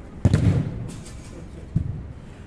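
A futsal ball kicked hard: a sharp thump about a quarter second in that rings on briefly. A second, lighter thud comes near the end.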